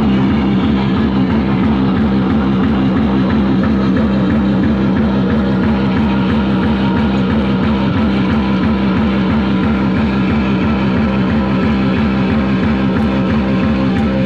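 Live electronic noise music played on tabletop synthesizers and effects: a loud, dense drone with strong low tones, pulsing at a fast, even rate.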